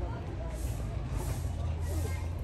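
Outdoor ambience: a steady low rumble with faint, indistinct voices over it and soft hissing swells every half second or so.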